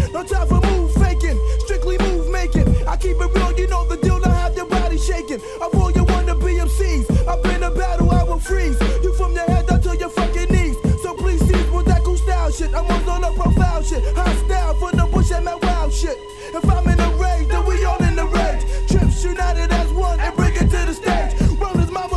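1990s boom-bap hip hop record playing: a rapper's vocal over a drum beat with deep bass and a held tone.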